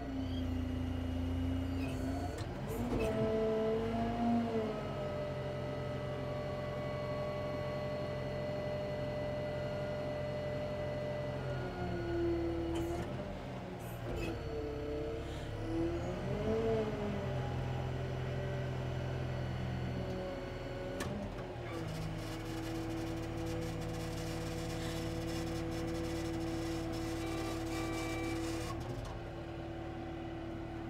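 Diesel telehandler running, its steady engine and hydraulic whine bending in pitch several times as the fork carriage is tilted down on the raised boom.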